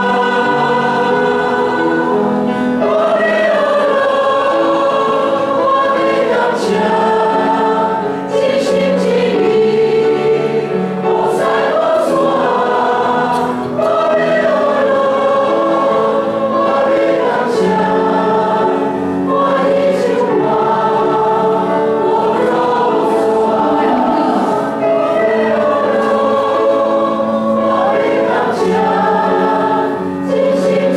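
A church congregation singing a Taiwanese hymn together, led by singers on microphones, with piano accompaniment; long sung phrases follow one another without a break.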